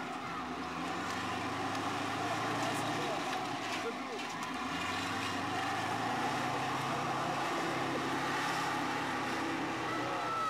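Army bulldozer's diesel engine running steadily while it works, its low note shifting in pitch a few times.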